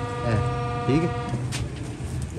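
A single steady horn-like note with several overtones, held for about a second and a quarter and then cut off suddenly, under men's talk.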